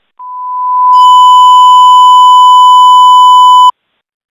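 Fire dispatch radio alert tone: one long, steady, loud electronic beep that swells in over the first second, is joined by a higher tone, and cuts off sharply near the end. It marks an all-units announcement from dispatch on the fireground channel.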